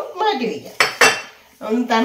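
Kitchenware clatter: a utensil clinks twice, sharply and in quick succession, against a glass bowl about a second in.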